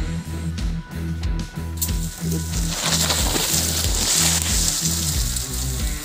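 Background music with a repeating bass line. From about two seconds in, a steady rustling hiss joins it, the crunch of footsteps through dry leaf litter on a forest slope.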